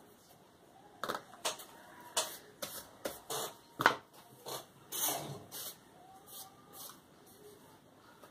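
Paper rustling and scuffing as a hand sweeps across a colouring-book page and the book is shifted on the desk: a string of irregular rustles and knocks, the loudest about four seconds in.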